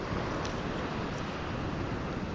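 Steady outdoor rumble and hiss of wind buffeting the microphone, even throughout.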